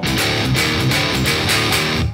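Distorted electric guitar, an Ibanez RG, playing a chugged metal riff with fast, even picking. Under the playing the ringing of the guitar's tremolo springs does not come through.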